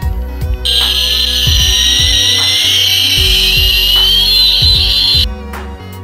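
Electronic jet-engine sound effect from a toy fighter jet model: a loud hissing whine whose tone rises steadily, starting about half a second in and cutting off suddenly after about four and a half seconds. Background music with a steady beat plays underneath.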